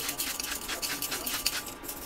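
Hand-twisted salt grinder grinding salt into a pot, a rapid irregular run of dry clicks.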